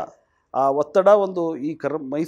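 A man speaking, with a short pause near the start before he goes on talking.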